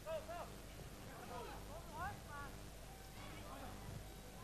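Faint voices in short phrases over a low, steady hum from the old recording.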